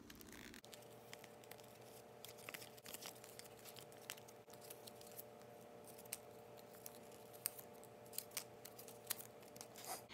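Faint crinkling and tearing of paper estradiol patch pouches being opened by hand, in scattered small rustles and clicks. A faint steady hum runs underneath from about half a second in.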